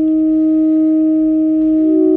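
Saxophones holding a long, steady note; a second, slightly higher note comes in near the end.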